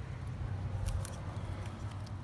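Faint metallic clicks and light scraping as a new NGK Ruthenium HX spark plug in a deep socket is turned by hand into its threads in the cylinder head, with a few sharp ticks about a second in, over a steady low hum.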